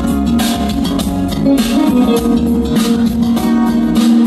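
Recorded music with a guitar and a heavy, deep bass line played loudly through large PA concert speakers.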